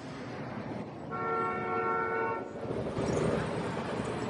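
Steady traffic rumble with a train horn sounding once, a held chord of several tones lasting a little over a second.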